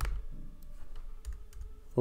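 Typing on a computer keyboard: a few scattered keystrokes.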